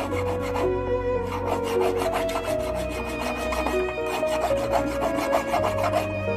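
Hand file rasping over the end of a silver wire held on a wooden bench pin, in quick repeated back-and-forth strokes, with background music playing underneath.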